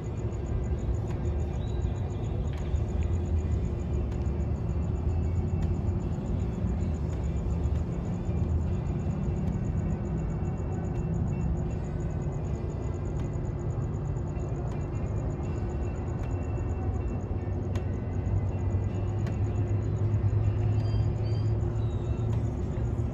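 Steady low rumble of a parked police car idling, with music playing from inside the car.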